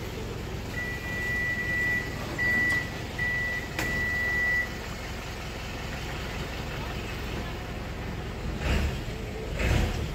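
Street traffic rumbling, with a high electronic beep sounding four times in the first few seconds: one long, two short, then one long. Near the end come two brief louder swells, like vehicles passing.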